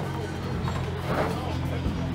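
A vehicle engine idling with a steady low hum that holds one pitch throughout.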